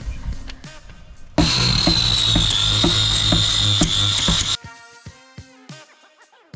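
Electric orbital sander running for about three seconds, sanding gel coat: a steady high whine over a low hum. It starts abruptly about a second and a half in and cuts off sharply, with background music before and after it.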